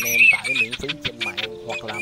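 A man talking over a looping track of music and teal duck calls, the calls short and repeated.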